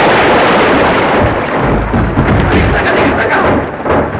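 Loud heavy splashing of water as a large body thrashes through a river, a dense wash of noise, with a deep rumble underneath from about a second and a half in.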